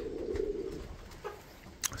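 Domestic pigeons cooing in a loft, a low sound strongest at first and fading over the first second. A single short click comes just before the end.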